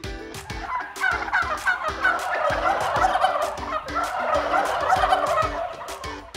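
Turkeys gobbling in a continuous rapid chatter of overlapping calls, starting about a second in.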